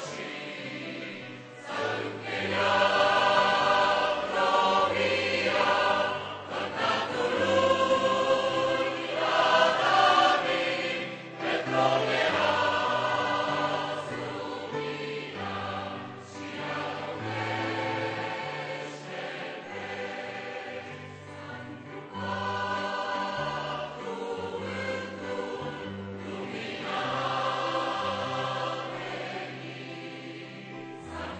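Mixed choir singing a hymn in Romanian, in long sustained phrases with brief breaks, over low accompanying chords. It is louder in the first half and softer from about halfway through.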